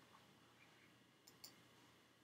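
Near silence broken by two faint computer mouse clicks in quick succession about a second and a half in, the second the louder.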